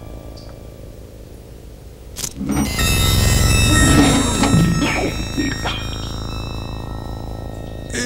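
Synthesizer horror score: a low drone, then a sudden loud crash of noise about two seconds in with many sustained high synth tones, fading back to the drone over the last few seconds.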